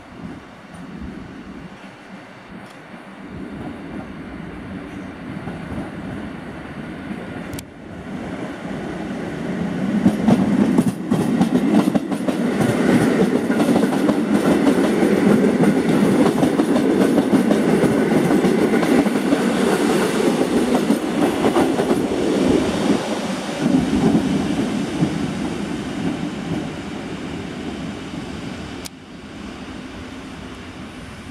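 EN57 electric multiple unit running into the station close past the platform: the rumble of the train builds, is loudest through the middle as the cars go by with the clicks of wheels over rail joints, then eases off as it slows toward a stop.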